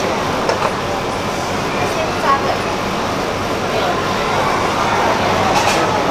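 Steady background hubbub of a busy food stall, with indistinct voices of people talking and a constant low rumble, broken by a few brief knocks.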